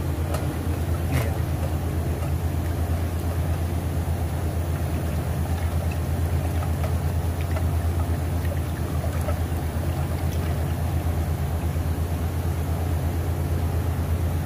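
A steady low machine hum, with a few faint clicks and scrapes of a wooden stir stick against a metal paint can as gold powder is mixed into sanding sealer.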